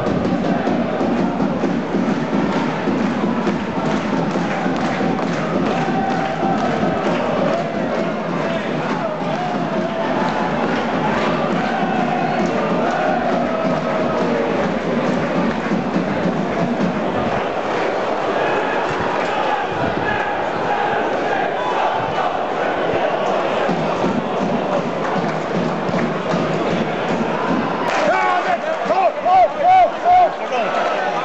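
Football crowd in the stands singing and chanting, a continuous mass of voices with some thuds mixed in. The chant swells into several loud rhythmic beats near the end.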